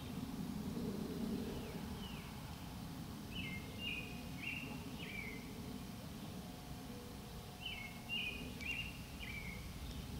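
A songbird singing short repeated phrases in two bouts, about three seconds in and again near the end, each note stepping down in pitch, over a steady low outdoor rumble.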